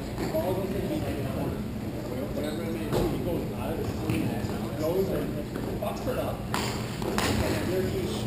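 Indistinct voices of hockey players calling out in a large rink during play. A sharp knock comes about three seconds in, and two louder, noisier hits come near the end.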